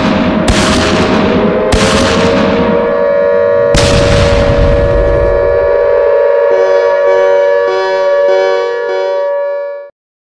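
Intro sound effects: three heavy explosion booms in the first four seconds over a sustained droning tone, then a tone pulsing about every 0.6 seconds, all cutting off abruptly near the end.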